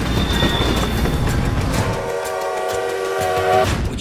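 Steam locomotive hissing and rumbling as it lets off steam, then its chime whistle sounding a steady chord for about two seconds before cutting off.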